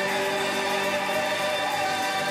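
A choir singing held notes with drum-kit accompaniment, the cymbals played with bundle sticks (rods).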